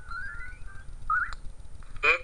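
Whistle-like cartoon sound effects: a thin tone rising in steps, then a short upward swoop about a second in, followed by a click.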